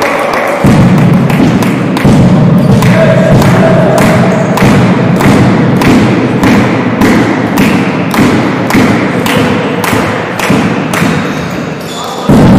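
Loud rhythmic thuds, about two a second, over a low rumbling noise that drops away near the end.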